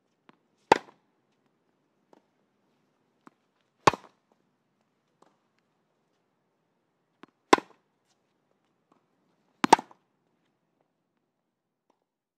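Tennis racket striking a ball four times, a few seconds apart, with a few much fainter ticks between the hits.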